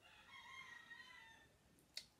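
A faint bird call: one long drawn-out cry that fades after about a second and a half. A sharp click follows near the end.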